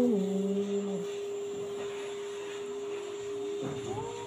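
African grey parrot giving a hummed call that steps down in pitch and stops about a second in, with a few faint short glides near the end, over a steady hum.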